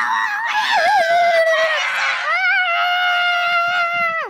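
A child's loud, high-pitched scream held for about four seconds without a break, wavering in pitch at first, then steady, and falling off at the end.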